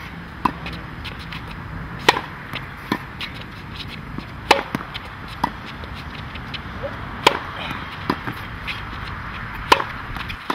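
Tennis ball struck hard with a racket in a series of overhead smashes: four sharp hits about two and a half seconds apart. Each is followed about a second later by a softer knock of the ball bouncing on the hard court, over a steady low background noise.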